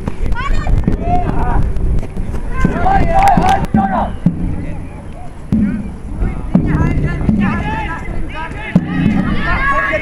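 Several people shouting and calling across a playing field during a Jugger match, with a low wind rumble on the microphone. A few sharp knocks are scattered through it.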